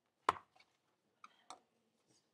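Handling noise: a sharp knock about a quarter second in, then two lighter clicks a quarter second apart past the middle.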